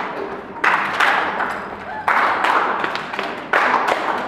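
A roomful of people clapping in short rounds. A new round breaks out sharply about every second and a half, three times, and each one dies away before the next.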